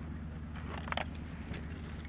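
Light metallic jingling, like keys on a ring, in small scattered bursts over the steady low running of a motorcycle engine at idle.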